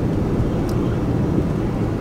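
Steady road and engine noise inside the cabin of a moving car: an even, low rumble.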